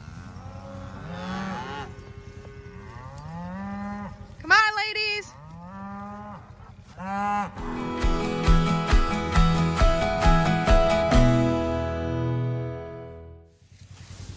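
Hungry beef cows mooing several times in turn as they come in, with one loud, close call about four and a half seconds in. About halfway through, a short piece of music with quick repeated notes takes over and fades out near the end.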